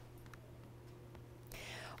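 Quiet studio room tone with a faint steady low hum and a few faint ticks; a soft hiss comes up about a second and a half in, just before the anchor speaks.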